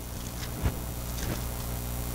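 Steady electrical mains hum from the pulpit sound system, with a soft knock a little over half a second in and faint rustles of Bible pages being turned.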